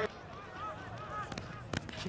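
Faint field-side ambience at a rugby league match: several short, arched, high-pitched calls over a low noise bed, with two light knocks near the end.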